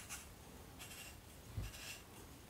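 Faint rubbing and scraping from an AR-15 receiver extension tube being turned by hand into the lower receiver's threads, which feel pretty tight, with a soft bump near the end.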